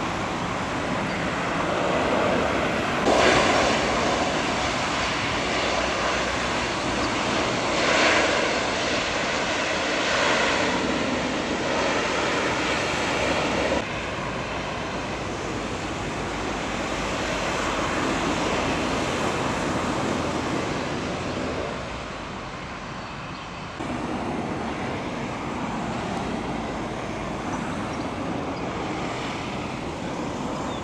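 Bombardier Dash 8-Q200 turboprop's engines and propellers running on the runway, a loud steady propeller noise that swells a couple of times. About halfway through the sound cuts abruptly to a quieter steady noise, and it changes again shortly before the end.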